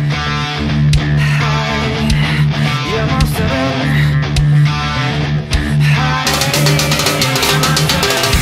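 Heavy rock music with a prominent distorted bass line and guitar. About six seconds in, a drum kit joins with a dense wash of cymbals and fast hits.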